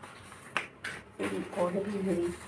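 A sharp click about half a second in, then a fainter one, followed by a child talking quietly.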